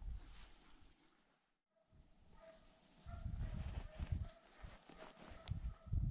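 Low, irregular thumps and rustling from a body-worn camera as a hunter moves with a rifle through grass. The sound briefly drops out about a second and a half in, and faint, repeated pitched calls sound in the distance in the second half.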